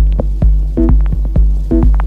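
Minimal tech house track: a kick drum with deep bass pulsing a little more than twice a second, short pitched synth stabs and thin clicking percussion between the beats.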